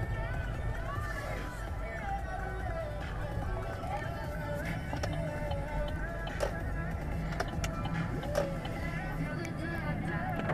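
Music with a singing voice playing from the car radio inside the cabin, over the steady low rumble of the car driving on a wet road.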